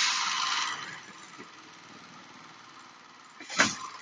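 Perlite mortar packing machine working on a clamped bag: a loud rush of hissing air that fades over about a second, then a low steady run, with another short hiss near the end.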